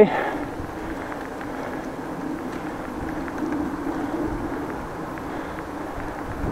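Steady rolling noise of a bicycle riding along an asphalt street, with a faint low hum and a few light ticks.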